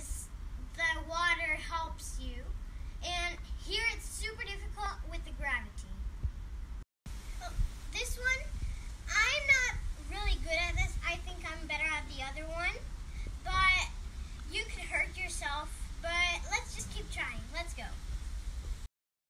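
A young girl talking in short phrases, with the sound cutting out completely for a moment about seven seconds in.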